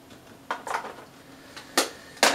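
Small hard items clicking and knocking as makeup is picked up and set down on a table: a knock about half a second in, a rougher scrape-like knock just after, and a sharper click near the end.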